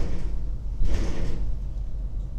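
A brief noise about a second in, lasting about half a second, over a steady low hum.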